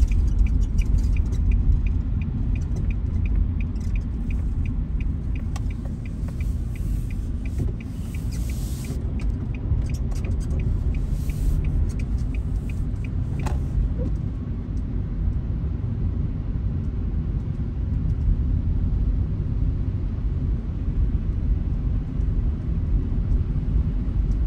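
Steady low rumble of a car's engine and tyres on a snow-covered road, heard inside the cabin. For the first eight seconds or so a turn signal ticks steadily, nearly three ticks a second, as the car turns.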